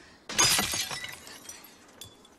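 A glass window pane shattering as a thrown rock hits it: a sudden loud crash about a third of a second in, dying away over about a second.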